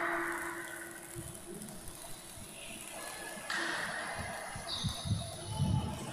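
Quiet church room tone: a held low note fades out about a second in, followed by faint background noise with a few soft low thumps.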